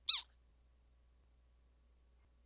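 Cartoon squeak sound effect for a small robot's step: one brief high-pitched squeak that falls in pitch, right at the start.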